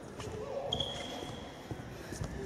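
A basketball bouncing on a hardwood gym floor, faint, with distant voices in the hall and a brief high squeak under a second in.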